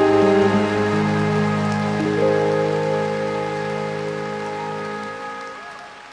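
Yamaha DGX digital keyboard playing held chords that fade away; a new chord comes in about two seconds in.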